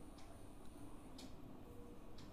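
Quiet room tone in a pause between spoken phrases, with a few faint ticks.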